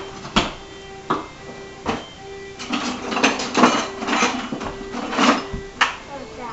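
A metal spoon clinking and scraping against a glass bowl while icing is stirred, with a few sharp clinks in the first two seconds and a busier run of them after. Music from a radio plays faintly underneath.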